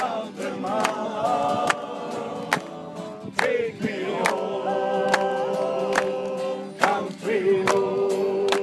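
Yodel singing: long held notes broken twice by sudden leaps in pitch, over a steady beat a little faster than once a second.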